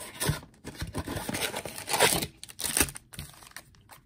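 A cardboard trading-card blaster box being torn open and its foil-wrapped card packs pulled out: a run of tearing and crinkling rasps, quieter near the end.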